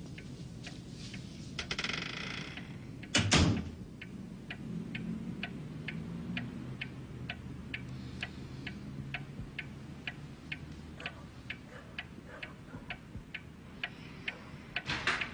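A steady series of light ticks, a little over two a second, starting about four seconds in. A single louder knock comes just before them.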